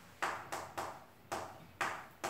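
Chalk striking and writing on a chalkboard: about five short, sharp strokes, each fading quickly.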